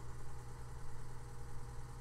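A steady low hum with a faint hiss, with no distinct events.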